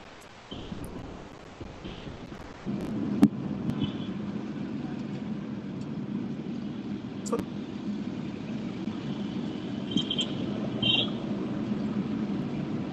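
Low steady background rumble, picked up through a video-call connection, rising about three seconds in and joined by a few sharp clicks.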